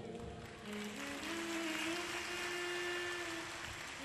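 Faint applause from a large seated audience, with a soft held tone underneath that steps up in pitch and then holds.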